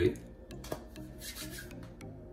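Plastic water bottle set down on a granite countertop with a light knock, followed by a brief scraping rub of hand and plastic.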